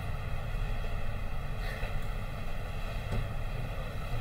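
Room tone: a steady low rumble with a faint even hiss above it, and no voice.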